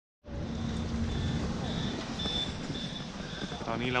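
Large bus engine idling with a low steady hum. A faint high beep repeats about twice a second over it.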